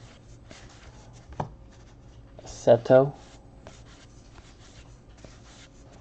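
Stack of trading cards being thumbed through by hand, each card sliding and rubbing off the next in soft scraping strokes, with a sharper click about a second and a half in. A short vocal sound cuts in just before the halfway point.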